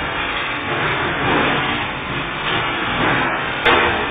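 Steady machinery noise from a hydraulic water-bulging (hydroforming) press running, with one sharp knock near the end.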